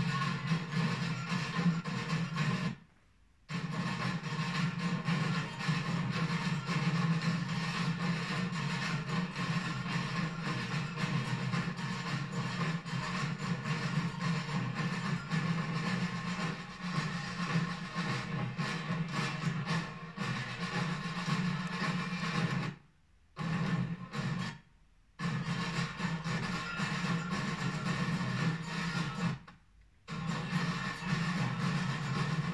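A street percussion band drumming, many drums and snares together, played back through a TV's speakers so the deepest bass is missing. The sound cuts out for about half a second a few times.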